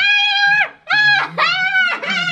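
A woman's high-pitched shrieks: three long squeals in quick succession, each holding its pitch and then dropping at the end.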